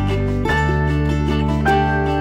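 Instrumental break in an acoustic pop song: plucked strings over held bass notes, with no singing. The chord changes about half a second in and again near the end.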